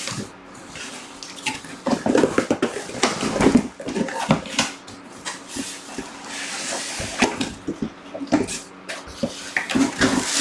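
Cardboard packaging and packing material being handled: irregular rustling and crinkling, with scattered small knocks and clicks.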